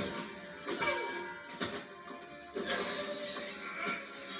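Television fight-scene soundtrack: dramatic score with sharp hits, then a loud crash with shattering about two-thirds of the way in.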